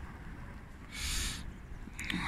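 Wind rumbling on the microphone, with a brief burst of hiss about a second in.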